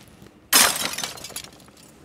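A big plastic syringe with tubing dropped into a bucket of sanitizer solution: a sudden splash about half a second in, fading over about a second.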